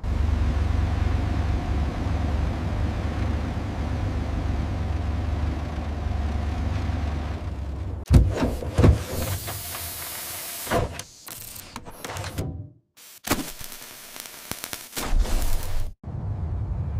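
Science-fiction sound effects: a steady low rumble with a hiss over it, matching a tracked rover's drive, then after about eight seconds an abrupt change to irregular servo-like mechanical whirs, clicks and hisses of a small robot, broken by a brief silence about thirteen seconds in.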